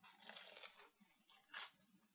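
Faint crunch of a bite into a deep-fried, batter-coated burrito, with a second short crunch about one and a half seconds in.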